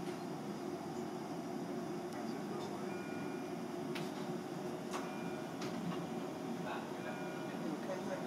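Steady room hum with a faint electronic beep, about half a second long, every two seconds, and a few light clicks.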